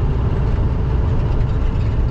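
Inside a semi-truck's cab at highway cruising speed: a steady low diesel engine drone with road noise.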